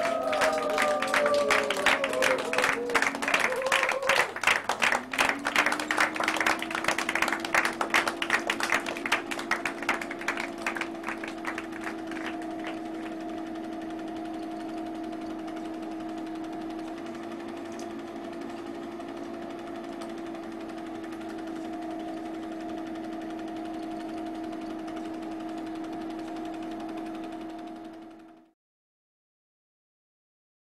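Film projector running: rapid mechanical ticking that thins out and fades over the first dozen seconds, leaving a steady motor hum that rises in pitch about five seconds in and then holds.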